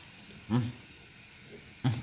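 Mostly quiet room hiss, broken about half a second in by one short voiced "hıh" from a man; speech starts again just before the end.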